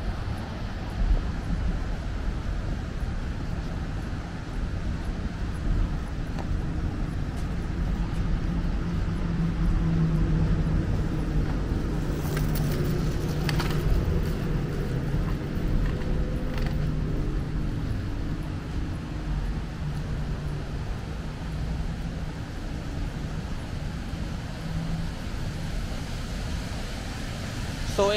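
Steady road-traffic rumble, with a vehicle passing that grows louder in the middle and then fades away.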